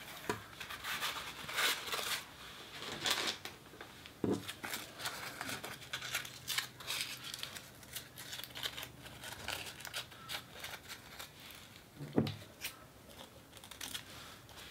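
Crepe paper crinkling and rustling as it is handled, torn and folded by hand, densest in the first few seconds. Two soft knocks, about four seconds in and near the end.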